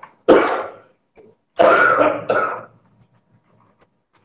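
A person coughing: one sudden sharp cough, then about a second later a longer double cough or throat-clear.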